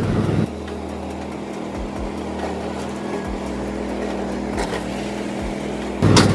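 Cub Cadet XT1 LT46 riding mower's engine running steadily while driving, with a few short low thumps along the way.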